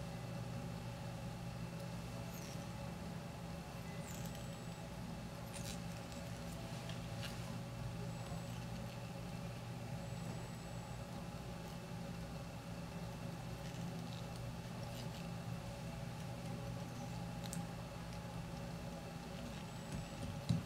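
Quiet room tone with a steady low hum, broken by a few faint ticks and light handling noise as thread is wrapped and turkey biots are tied down on a fly in a vise.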